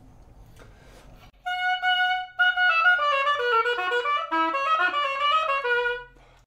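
Oboe played on a Jones Double Reed student (red) medium-soft reed. About a second and a half in, it sounds one held note, then a run of shorter notes stepping mostly downward. The reed plays flat, almost a semitone under pitch.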